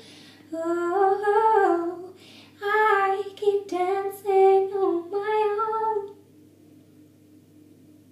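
A woman singing a slow melody in a few short phrases, which end about six seconds in, leaving only a faint low hum.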